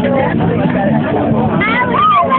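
Several people's voices talking and calling out over one another, with a high rising-and-falling shout near the end.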